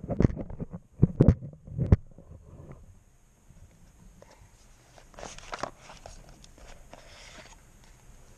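Cardboard packaging handled by hand: a run of sharp clicks and knocks in the first two seconds as the ESC is lifted from its insert, then quieter scraping and rustling of the cardboard box.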